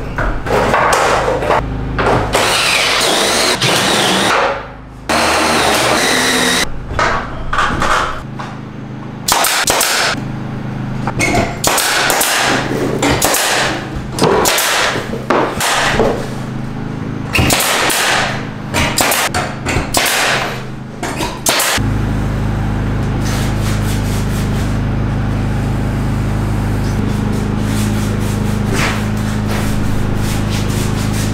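Construction tool sounds: a drill driving screws into corrugated metal sheeting and a nail gun firing into wooden trim, in many short stop-start bursts and knocks. About two-thirds of the way through, this gives way to a steadier, even sound.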